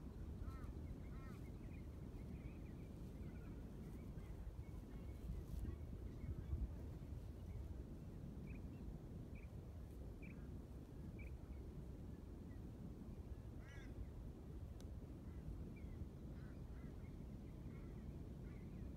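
Wind rumbling on the microphone outdoors, with short honking bird calls breaking through now and then, a cluster of them about halfway through.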